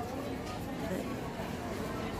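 Steady background murmur of a busy shop interior: indistinct distant voices and room noise, with no close voice.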